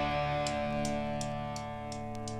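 A held electric guitar chord ringing out and slowly fading during a break in a punk rock song, played from a 7-inch vinyl record, with faint regular ticks about three times a second.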